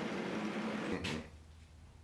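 Drill press motor running with the bit raised out of the steel tube after drilling a small air hole, then cutting off abruptly with a short click about a second in, leaving faint room tone.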